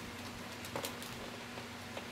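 Quiet room with a faint steady hum, and a brief soft rustle a little under a second in from a clear plastic zip-top bag being handled.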